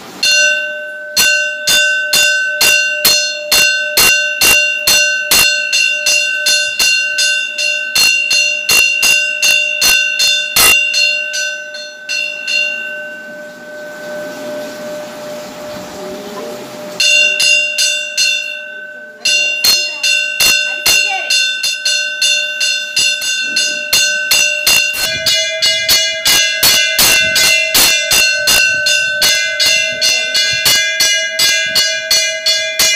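A temple bell is struck over and over, about two to three strikes a second, each ringing on into the next, as the bell is rung for the abhishekam. The ringing drops away for a few seconds in the middle. It resumes and takes on a slightly higher, fuller ring near the end.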